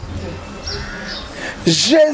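A quiet stretch of low background noise, then near the end a loud, drawn-out voice whose pitch wavers up and down, a man's vocal exclamation.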